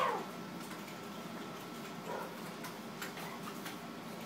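A dog's short, high-pitched yelp right at the start, then a fainter whine about two seconds in, made while playing, with a few light clicks of claws on a hard floor.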